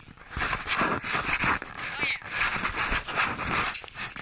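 A dog digging into a rabbit burrow: repeated, irregular bursts of scratching soil and snuffling breaths, several a second.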